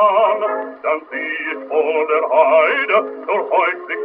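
Early gramophone record of a German art song: a male voice with accompaniment, sounding thin and narrow-band with strong vibrato.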